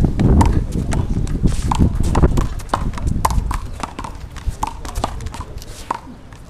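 One-wall handball rally on concrete: sharp slaps of a small rubber handball off gloved hands, the wall and the floor, mixed with quick sneaker footsteps, scuffs and short squeaks on the concrete court.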